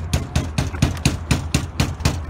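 A fist banging rapidly and repeatedly on a locked entrance door, about five knocks a second, to be let in.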